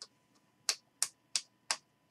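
Panini Prizm football cards being flicked one at a time from one stack to the other in the hands, each card giving a sharp snap. There are four crisp clicks at an even pace of about three a second, starting a little after half a second in.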